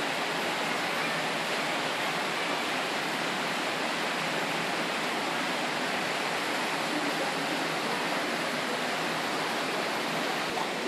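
Steady, unbroken rush of flowing water.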